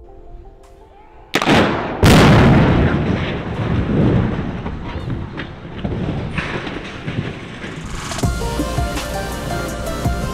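Demolition explosive charges going off at the base of a concrete stair tower: a sudden blast about a second in, a louder one just after, then a long fading rumble. Music comes in near the end.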